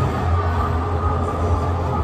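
Busy indoor ice rink ambience: a steady low rumble under a dense wash of background noise.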